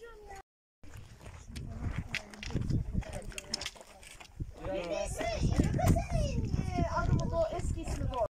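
Several people's voices talking over one another, with no clear words, over a low rumble.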